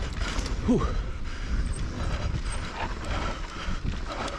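Electric mountain bike ridden fast down a dry dirt trail: wind buffeting the camera microphone, tyres rolling on loose dirt and the bike rattling over bumps. A short creak rises in pitch about three-quarters of a second in.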